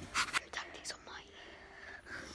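A person whispering briefly close to the microphone in the first second, then quiet.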